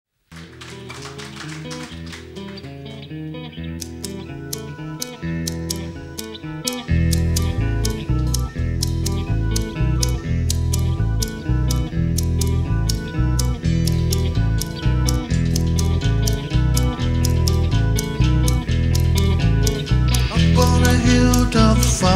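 Live progressive rock band playing an instrumental intro: keyboards and electric guitar over a steady clicking beat. Bass and drums come in about a third of the way through, and the music gets louder.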